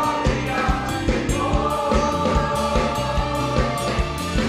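Choir singing a slow gospel worship song, holding long notes, backed by a live band with a steady drum beat and electric guitars.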